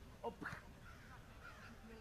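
A short shouted "oh!" about a quarter second in, followed by faint shouting from players across the field.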